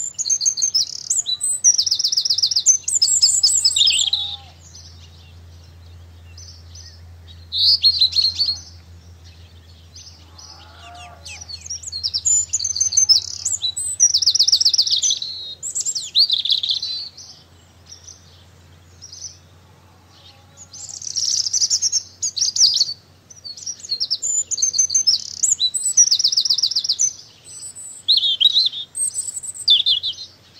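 A small songbird singing loud, high, fast trilling phrases of one to four seconds, one after another with short pauses between.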